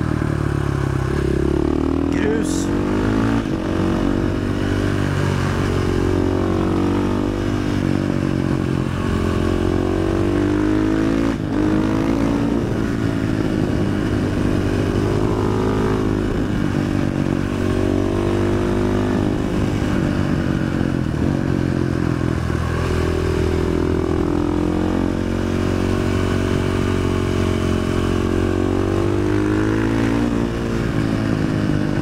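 KTM 500 EXC single-cylinder four-stroke engine revving hard through an FMF exhaust with the dB killer removed. The engine note climbs and drops over and over as the bike accelerates out of bends and slows into them.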